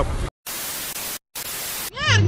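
White-noise static in two bursts, each under a second, broken by short silences, like a TV-static transition effect. The street sound of the previous clip cuts off just before it.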